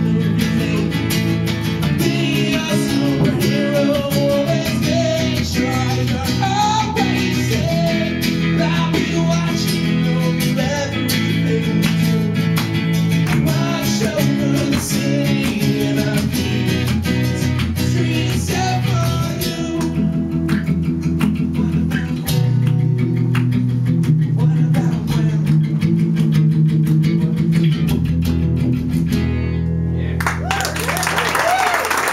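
Live acoustic guitars strumming a song's instrumental ending; about two-thirds of the way through the strumming stops and held chords ring out, closing just before the end.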